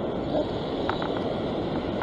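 Steady rush of wind on the microphone and surf washing over a rock platform, with a couple of faint clicks about a second in.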